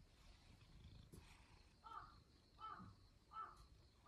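Domestic cat giving three short, soft meows about two-thirds of a second apart, close to the microphone.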